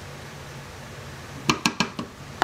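Low steady room hum, then three quick sharp clinks about one and a half seconds in, with one more at the end: a small glass dish knocking against the plastic measuring cup and countertop as the last of the coconut oil is poured out and the dish is set aside.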